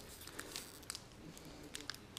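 Faint crinkling of a foil trading-card booster pack being handled as it is opened, a few soft scattered ticks.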